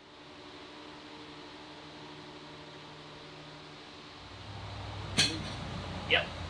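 A steady low hum, then one sharp wooden knock a little before the end as a heavy oak plank is pushed up against the hull frames.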